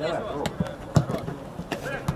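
A football being kicked on an artificial-turf pitch: a few sharp knocks, the loudest about a second in, after a brief shout from a player at the start.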